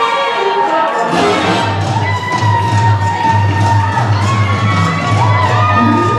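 Ballroom spectators cheering and shouting over a live band playing a waltz, with a steady bass line coming in about a second in.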